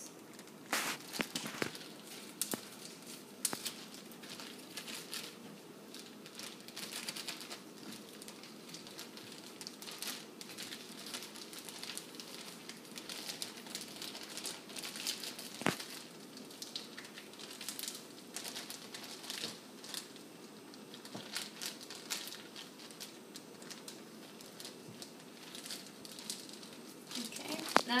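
Plastic zip-top bag crinkling irregularly as it is rubbed and kneaded by hand from the outside, mixing the cornstarch slurry inside.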